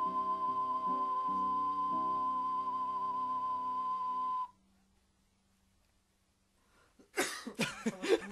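Ocarina holding one long high note with a slight wobble over a chordal accompaniment; both cut off suddenly about four and a half seconds in. After a moment of near silence, laughter and voices break out near the end.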